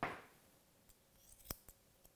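Grooming shears cutting a Wheaten Terrier's head coat: a short swish of coat at the start, then a few crisp snips, the loudest a pair about a second and a half in.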